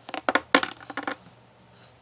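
Hard plastic toy clattering against a plastic seat tray: a quick run of clicks and knocks in the first second, the loudest about halfway through it.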